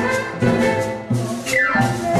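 A live Latin dance band playing: wind instruments hold notes over drum kit and hand percussion keeping a steady beat. Near the end one high note slides downward in pitch.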